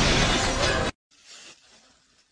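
Loud explosion, a dense noisy blast that cuts off abruptly about a second in.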